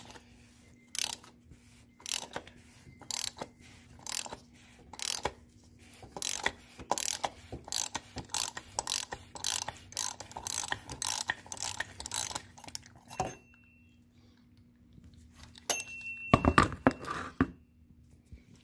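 Ratchet wrench clicking as it unscrews the oil filter housing cap on a BMW N20 four-cylinder engine. The clicks come about once a second at first, then in quicker runs, then stop; a brief louder clatter follows about two seconds before the end.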